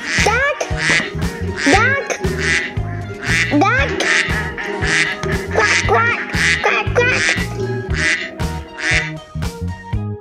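Duck quacking repeatedly over backing music with a steady beat.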